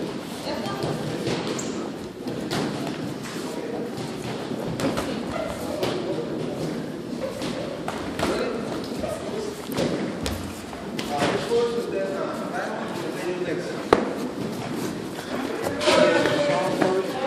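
Sparring boxers' gloves landing punches: irregular thuds and slaps scattered throughout, with one sharper, louder hit near the end.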